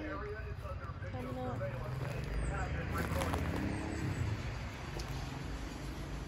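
A passing car: its engine sound swells and fades about two to four seconds in. Faint voice-like sounds come early on.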